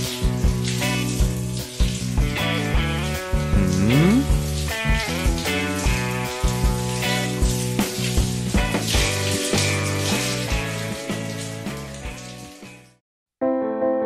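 Background music with a steady beat, with a quick rising slide in pitch about four seconds in. The music fades out and briefly stops near the end, and a softer keyboard tune begins just before the end.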